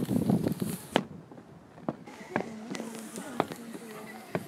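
Footsteps knocking on wooden floorboards, a handful of separate steps spaced roughly half a second to a second apart, after a busier first second of rustling and knocks.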